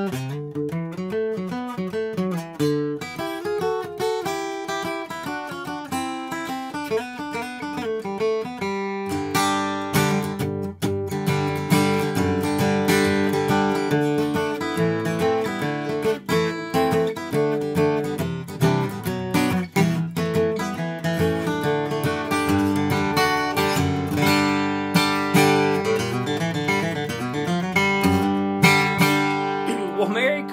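Handmade steel-string dreadnought acoustic guitar with a red spruce top and Indian rosewood back and sides, played solo. It opens with lighter picked notes, then from about nine seconds in the playing turns fuller and louder with strummed chords.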